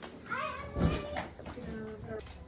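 A high-pitched voice calling out in a long, drawn-out sing-song call, followed near the end by a shorter, lower held call.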